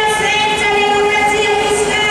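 A horn held on one steady note in long blasts, breaking off briefly just after the start, over crowd noise.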